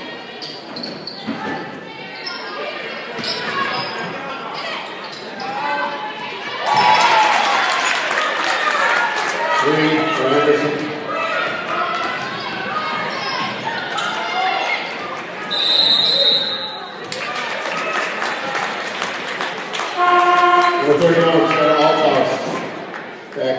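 Basketball dribbling and bouncing on a hardwood gym floor, with players and spectators shouting, in a large echoing gym. About two-thirds of the way through, a referee's whistle gives one long blast, and near the end a steady, low-pitched tone sounds.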